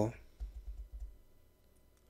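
Faint clicking of keys on a computer keyboard as the formula is typed up, with a few soft low thumps in the first second.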